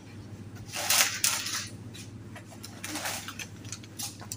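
Supermarket room sound: a steady low hum, with short bursts of rustling noise, the loudest about a second in and another near three seconds.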